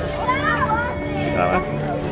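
Children's voices at a busy play area, with two short high calls, one about half a second in and one near the middle, over faint background music.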